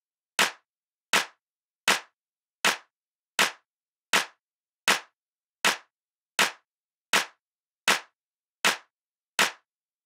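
Hand claps on a steady beat, one about every three-quarters of a second (80 to the minute), thirteen claps in all with silence between. Each clap is a quarter note in a 4/4 rhythm of unbroken quarter notes with no rests.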